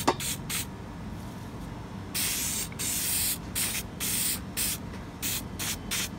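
An aerosol can of 3M Super 77 spray adhesive hissing in short bursts, with one longer spray about two seconds in, as a light coat of glue goes onto the seat foam and seat pan.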